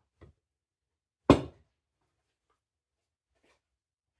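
A single sharp knock close to the microphone about a second in, dying away quickly, with a faint click just before it.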